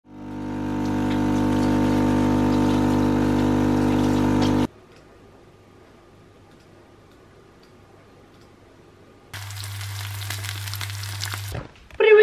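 A coffee machine running as it dispenses a frothy milky drink into a glass: a steady hum with hiss that swells in at the start and cuts off after about four and a half seconds. After a few seconds of quiet room tone, a lower steady hum with hiss runs for about two seconds near the end.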